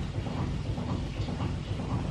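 Washer-dryer running its tumble-dry cycle, a steady low rumble with a repeating pulse.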